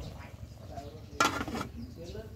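Aluminium pot lid set down onto a boiling pot with a short, loud metallic clatter about a second in, over the low steady noise of the boil on a wood fire.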